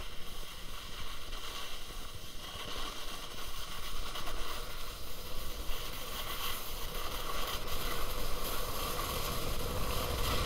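Steady rushing, scraping noise of sliding downhill on a groomed snow run, edges carving over the snow.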